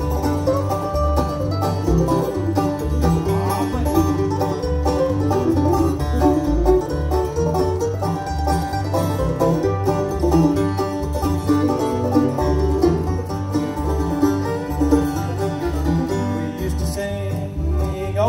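Live bluegrass band playing an instrumental break with no singing: fiddle bowing the melody over banjo, acoustic guitar, mandolin and a plucked upright bass beat.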